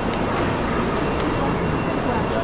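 Steady background din of a crowded shopping-mall hall: many people's voices and footsteps blended into a continuous noise, without distinct events.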